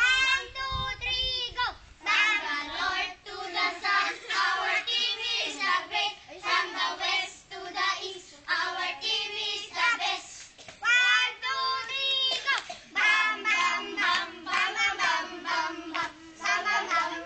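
A group of children singing together, phrase after phrase with short breaks between them.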